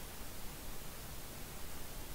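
Steady, even hiss of a recording's background noise in a pause between spoken words: room tone and microphone hiss, nothing else.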